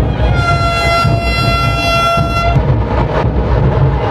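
Vande Bharat Express train horn sounding one long blast of about two seconds as the train arrives at the platform.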